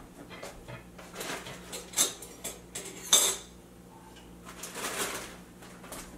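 Kitchenware being handled: scattered clinks and knocks of utensils and dishes, with the loudest clack about three seconds in.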